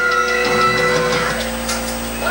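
Instrumental break music from a TV talk show, sustained chords heard through a television's speaker.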